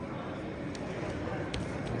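Gymnasium ambience during a wrestling match: a steady murmur of distant spectator chatter, with a few faint sharp clicks or slaps from the wrestlers on the mat.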